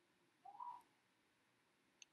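Near silence: room tone, with one faint brief rising note about half a second in.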